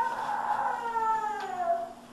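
A young child's long, high-pitched wail that wavers, then falls in pitch and stops near the end, over a faint steady hum.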